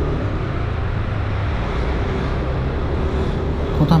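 Motorcycle engine running steadily while riding at an easy, even speed, with a continuous hum of engine and road noise.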